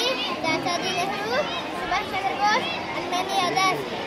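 A young boy's voice speaking, high-pitched and continuous; the words are not made out.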